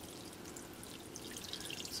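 Water sprinkling from a metal watering can's rose onto dry potting soil in seed-cell trays: a faint, steady spray.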